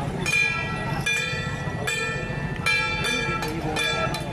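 Small metal gongs struck in a steady, repeating rhythm, about two to three strokes a second, each stroke ringing briefly: the percussion that accompanies a Ba Jia Jiang troupe's performance.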